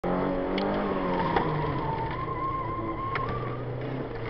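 Opel Corsa 1.4 engine heard from inside the cabin, its revs dropping over the first two seconds as the car swings through a tight turn, with the tyres squealing through the middle of the turn. A few sharp knocks are heard along the way.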